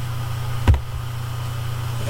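Steady low background hum of the recording, with a single sharp click under a second in, fitting a mouse click that advances the slide.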